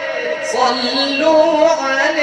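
A man singing an Arabic Islamic devotional chant (inshad) in praise of the Prophet. He draws out one long melismatic phrase, the voice sliding slowly upward in pitch.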